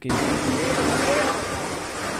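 Audio of a street full of volunteers clearing flood mud, heard from a phone video: a dense, steady din with voices calling out faintly within it. It starts suddenly as the video begins.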